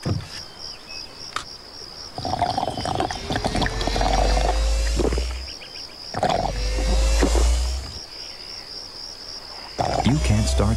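Commercial soundtrack of soft music over a steady, evenly pulsing high chirp of crickets, with two deep low swells of sound in the middle.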